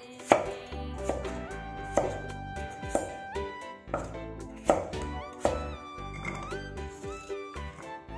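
Chinese cleaver cutting peeled raw potatoes into roll-cut chunks on a wooden chopping board: sharp knocks of the blade hitting the board, roughly once a second, over light background music.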